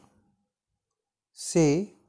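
Near silence for more than a second, then one short spoken word (Hindi "से") from a slow dictation voice, near the end.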